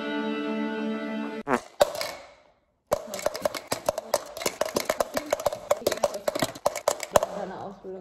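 A held musical chord that fades out about two seconds in. After a moment of dead silence comes about four seconds of fast, irregular clicking and crackling, an edited sound-effect track.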